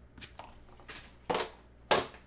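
A cardboard trading-card box and stacked foil packs being handled on a table: a few light taps, then two louder bumps, one about a second and a half in and a sharper one at the end.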